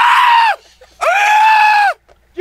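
A man screaming twice: two loud, high-pitched yells, the second starting about a second in and lasting nearly a second.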